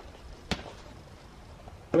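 A single sharp click about half a second in, from the rubber inner tube and knobby fat-bike tire being handled as the tube is fed into the tire; otherwise only low background noise.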